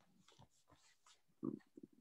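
Near silence on a video call, with a few faint short voice-like sounds about a second and a half in: a person hesitating mid-question.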